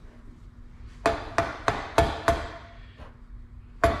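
A rubber mallet taps a greased polyurethane bushing into a tubular chromoly control arm. There are five quick blows starting about a second in and another near the end, each with a brief ring from the arm.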